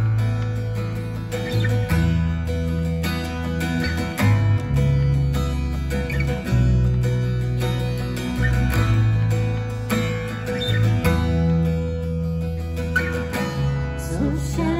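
Instrumental passage of a worship song: acoustic guitar strummed in chords over an electric bass holding long notes that change every two seconds or so.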